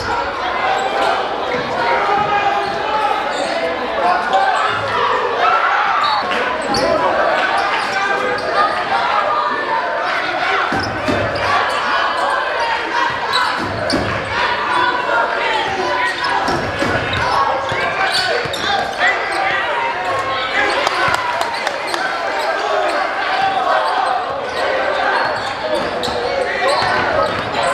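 Live basketball game sound in a gym: a crowd's voices chattering and calling out, echoing in the hall, with a basketball dribbled on the hardwood floor in several thuds.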